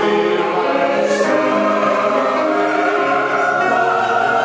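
Church chancel choir of mixed men's and women's voices singing, holding long sustained notes.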